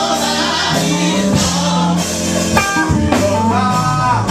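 Live amplified gospel music: a voice singing over a band with a sustained bass line and drum hits, played loud.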